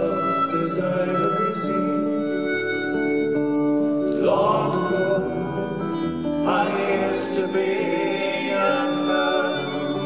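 Live acoustic folk music: strummed acoustic guitars under a sustained, held melody line, an instrumental passage with no lyrics sung.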